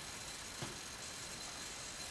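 Faint steady hiss of room tone with no distinct source, and a brief faint tick a little over half a second in.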